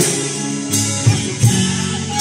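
Live band playing: acoustic and electric guitars with a bass guitar, amplified, over a steady beat of about one pulse every 0.7 seconds.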